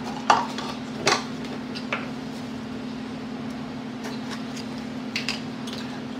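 A few light clicks and knocks of kitchen containers and utensils being handled on a counter, over a steady low hum.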